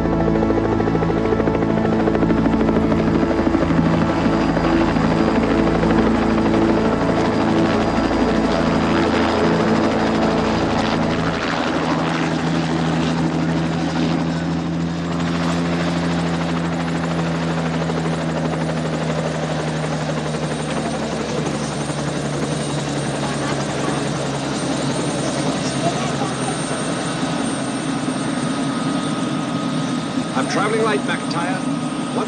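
Helicopter coming in and landing, its rotor and engine droning steadily. About twelve seconds in the deepest rumble drops away, and the droning fades over the second half as the helicopter settles on the ground.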